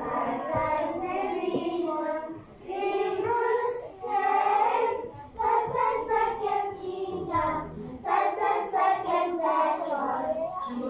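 A group of children singing a song together, in short phrases with brief pauses between them.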